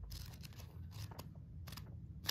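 Paperback book pages being thumbed through, a faint run of soft, quick page flicks.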